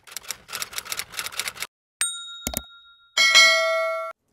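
Intro sound effects: rapid typewriter-style key clicks for about a second and a half, then a ding about two seconds in, a short knock, and a louder, brighter bell chime a little after three seconds that rings on as it fades.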